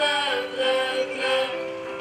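Children's choir singing together, holding long notes and moving to a new pitch about one and a half seconds in.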